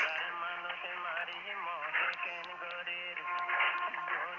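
Unidentified music with a wavering melodic line, received as an AM broadcast on 1575 kHz: thin and band-limited, as heard through a narrow-bandwidth receiver.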